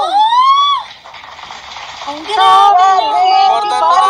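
An excited exclamation for under a second, then a short hissy stretch. About halfway through, a voice begins singing held notes over a livestream connection.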